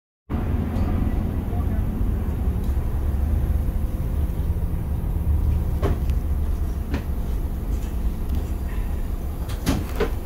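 Low, steady rumble of a city bus's engine heard from inside the cabin, with three sharp knocks or rattles about six, seven and ten seconds in.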